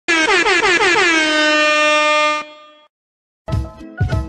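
Air horn sound effect: a rapid run of short blasts, about six a second, running into one long held blast that cuts off sharply about two and a half seconds in. Music with a beat starts near the end.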